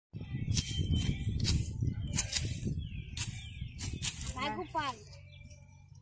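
Hoe blades striking and scraping dry, grassy soil in several irregular chops over the first four seconds, during hand hoeing.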